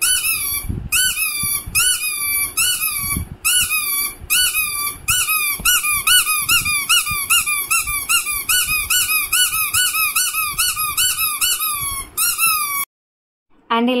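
Pink spiky sensory ball squeezed over and over in the hand, giving a high squeak with each squeeze, about two to three a second, each squeak rising then dropping in pitch. The squeaking stops abruptly near the end.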